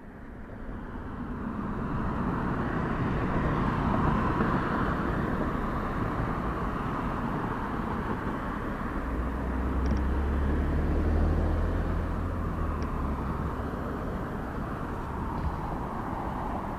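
Passing car traffic at an intersection: a steady wash of tyre and engine noise that swells over the first couple of seconds, with a deeper engine hum from a vehicle going by near the middle.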